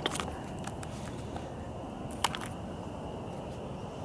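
Quiet outdoor ambience: a low steady hiss with a faint, steady high-pitched tone running through it, and a few light clicks, one sharper click about two seconds in.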